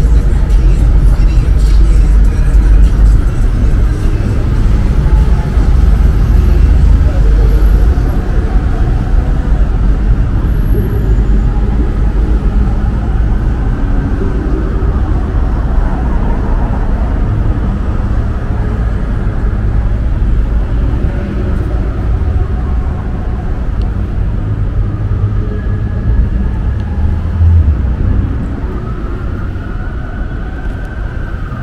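Downtown street ambience: a steady low rumble of road traffic, with voices of people nearby, easing somewhat near the end.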